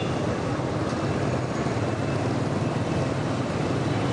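Steady road noise from riding a motorbike through city traffic: wind rushing over the microphone, heaviest in the low end with a fluttering rumble, with the bike's engine and the surrounding traffic underneath.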